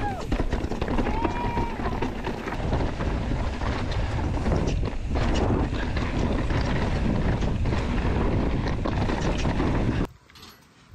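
Downhill mountain biking heard from a bike-mounted action camera: wind buffeting the microphone, tyres on rock and dirt, and the bike rattling over bumps with many short knocks. A brief high-pitched sound rises and falls about a second in.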